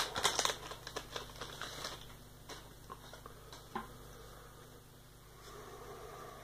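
Foil wrapper of a Pokémon TCG booster pack being torn open and crinkled by hand: a run of crackles in the first two seconds, then a few scattered clicks and rustles.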